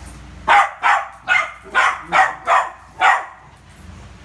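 A poodle barking at a balloon: seven sharp barks in quick succession, about two and a half a second.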